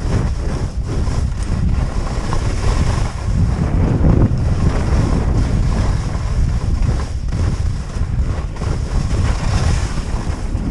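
Loud wind noise on the microphone of a camera worn by a downhill skier, mixed with the steady hiss and scrape of skis sliding over firm, tracked-up snow.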